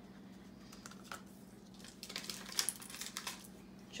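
Quiet crinkling of a small clear plastic bag and light plastic clicks as googly eyes are shaken out onto a wooden tabletop, the clicks thickest a little past the middle.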